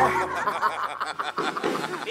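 Several people laughing and snickering together in a studio.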